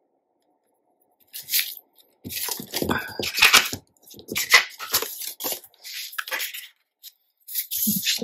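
Strips of patterned scrapbook paper being handled: lifted, shuffled and slid across a cutting mat. The rustling comes in irregular bursts starting about a second in.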